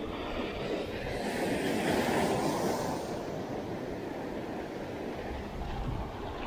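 Small waves breaking and washing up the sand, one wash swelling louder a second or two in, with wind on the microphone.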